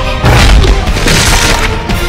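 Music with a loud boom about a quarter second in, followed by a noisy crashing sound effect for most of a second, as in an animated fight hit.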